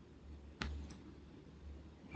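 A faint click about half a second in, followed by two softer ticks, over a low background hum.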